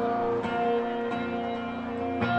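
Electric guitar playing slow, ringing chords, a new chord coming in about every half second to second, recorded from the audience in a large arena.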